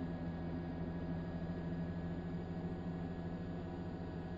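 A steady, low mechanical drone with an even hum, unchanging throughout.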